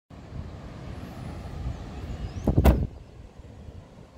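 A road vehicle passing close by, its rumble building to a loud rush about two and a half seconds in and then falling away quickly.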